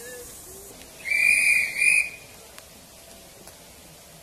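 Miniature steam locomotive's whistle: a high-pitched blast about a second in, followed at once by a short second toot.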